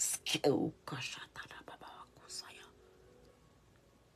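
A woman's voice trailing off into whispered words and breaths, then fading to quiet room tone over the last second or so.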